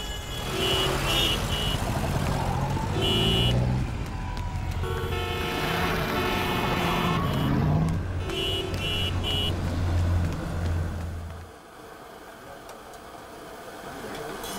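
Busy street traffic: car horns beeping in short repeated bursts, with one longer blast, over a steady engine rumble. The traffic noise cuts off abruptly near the end, leaving a quieter room background.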